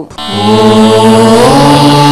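A chanted note in a devotional programme's title music: one long held vocal tone that slides up in pitch about one and a half seconds in.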